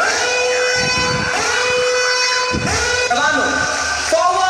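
A voice singing long held notes over backing music, with sliding notes near the end.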